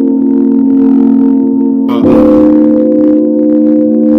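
Instrumental backing beat: a loud, sustained chord of steady low tones, with a new chord struck about two seconds in.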